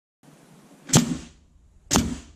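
Two sharp hit sound effects about a second apart, each with a brief ringing tail, laid over a title-logo animation.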